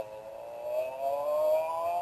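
A single long held tone from the pronoun parody song's soundtrack, rising slowly and smoothly in pitch, like a siren.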